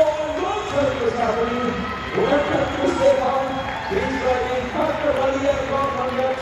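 A man announcing over the arena's public-address system, his voice echoing in a large indoor hall.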